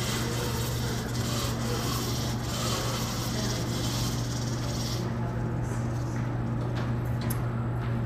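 Otis hydraulic elevator's doors sliding slowly closed, a soft rubbing sound over a steady low hum.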